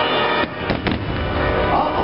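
Aerial firework shells bursting: two sharp bangs in quick succession a little under a second in, over the show's soundtrack music.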